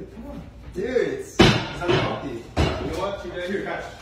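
Two loud thumps about a second apart, like a kitchen door being banged shut, with voices talking around them.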